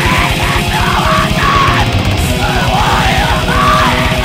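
Black metal recording: rapid drumming under distorted guitars, with a harsh screamed vocal over the top.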